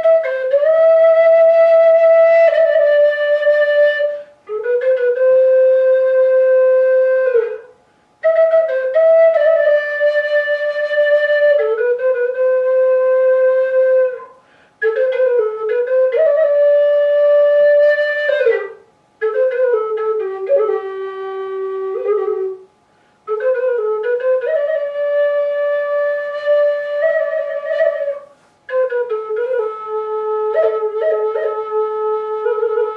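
Alto sopilka, a Ukrainian wooden fipple flute, playing a slow folk melody of long held notes in phrases of several seconds each, with short breath pauses between them.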